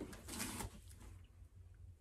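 Faint rustle of a piece of toile fabric being picked up and handled, mostly in the first half-second or so.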